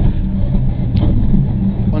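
Mitsubishi Lancer Evo IX rally car's turbocharged four-cylinder engine running under load, heard from inside the cabin, with tyre and road noise underneath. Its note holds fairly steady.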